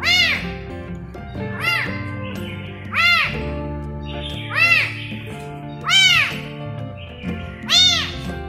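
A tiny kitten meowing about six times, roughly every second and a half, each meow high-pitched and rising then falling. Background music with sustained notes runs underneath.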